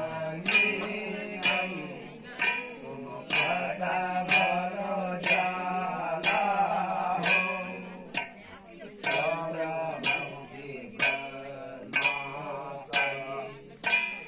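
A man chanting a Kumaoni jagar, a devotional folk narrative song from Uttarakhand, in long sung lines with a brief break about eight seconds in. A percussion stroke keeps a steady beat under it, about once a second.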